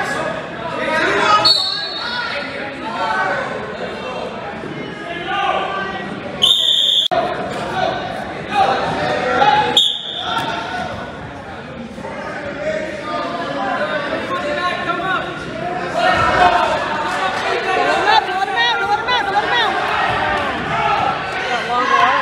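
Spectators' and coaches' voices calling out, echoing in a gymnasium, with a brief high-pitched tone about six and a half seconds in and a shorter one about ten seconds in.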